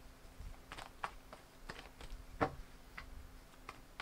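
Tarot cards being shuffled by hand: irregular light clicks and snaps as the cards strike each other, the loudest snap about two and a half seconds in.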